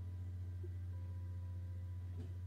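A steady low electrical hum with a few faint, thin steady tones above it, and no other sound.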